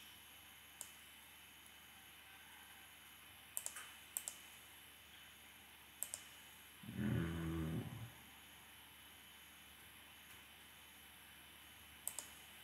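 A few computer mouse clicks, then a short low hum from a voice, about a second long, around seven seconds in.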